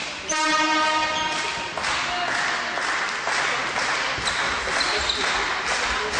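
A horn sounds one steady note for about a second and a half in a sports hall, and then a crowd cheers and shouts.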